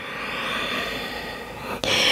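A woman's long, audible yoga exhale through the mouth as she rounds her spine, followed near the end by a quick, sharper inhale.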